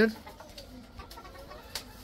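Faint, low calls from caged chickens in a poultry shed, with one light click near the end.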